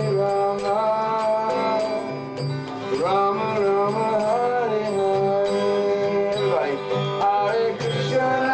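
A devotional kirtan song sung by voices to acoustic guitar accompaniment, with long held sung notes. A high metallic jingle keeps a steady beat.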